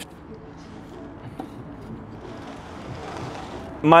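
Metal prowler sled dragged across rubber floor tiles: a rough scraping friction noise that builds over about a second and a half in the second half.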